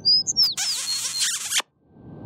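Cartoon sound effects: a few high, squeaky whistle-like chirps, some sliding down in pitch, then a loud hissing whoosh about half a second in that cuts off suddenly near the end.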